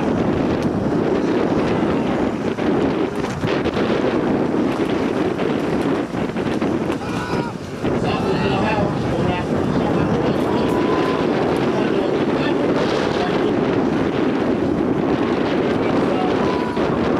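Steady wind buffeting the microphone on an open beach, with faint snatches of distant voices.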